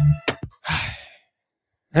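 A man's breathy sigh, a short exhale lasting about half a second, just after a stretch of rhythmic music cuts off. A moment of silence follows, then a man's voice at the very end.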